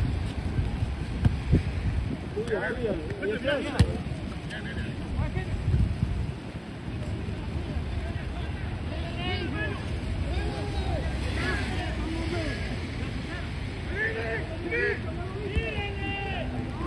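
Wind buffeting the microphone with a steady low rumble, under distant shouts and calls from players on the pitch. A single sharp knock comes about four seconds in.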